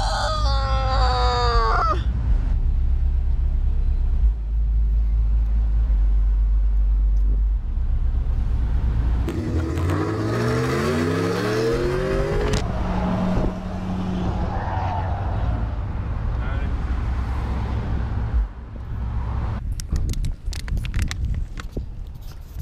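Engine and road noise heard inside a moving vehicle's cabin, steady and low, with a laugh in the first two seconds. About ten seconds in, the engine note rises for a few seconds as the vehicle speeds up. Near the end come a run of sharp clicks and knocks.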